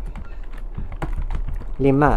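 Computer keyboard being typed on: a quick, uneven run of key clicks as a line of code is entered.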